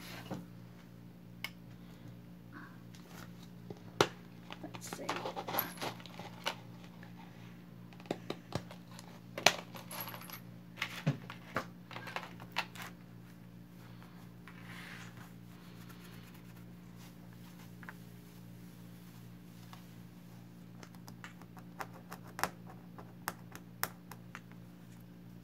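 Scattered sharp clicks and taps of small hard objects being handled on a table, at irregular intervals with the loudest knocks about four and nine seconds in, over a steady low hum.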